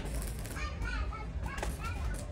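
Indistinct background voices over a steady low rumble, with a sharp click about one and a half seconds in.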